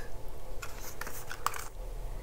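Light clicks and rustling of a small cardboard box being handled as a concealer tube is slid out of it, with a few sharp ticks in the middle.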